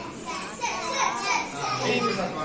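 Several children's voices calling out at once in a classroom.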